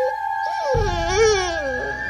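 A dog's whining howl: one long wavering call that falls in pitch, over a steady, eerie high-pitched music drone.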